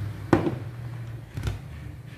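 Two knocks of a stainless steel mixing bowl being shifted on a wooden table: a sharp one about a third of a second in, a lighter one about a second and a half in.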